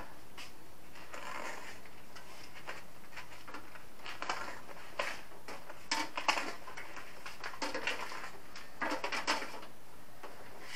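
Foam insulation sleeves on air-conditioner copper refrigerant pipes being handled and slid back over the pipes. They make soft, scattered rustling and scraping sounds, with a few short clusters over several seconds.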